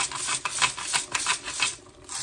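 Pepper mill grinding black pepper, a quick run of gritty clicks that stops just before the end.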